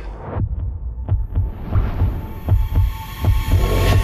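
Trailer sound design: deep low pulses about twice a second, punctuated by sharp hits, under a swell of noise that rises and builds through the second half.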